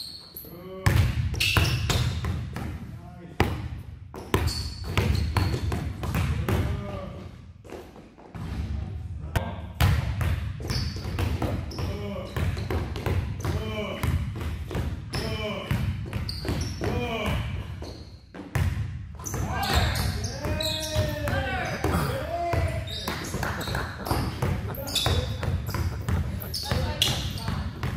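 Basketballs dribbled repeatedly on a hard gym floor, the bounces echoing in a large hall.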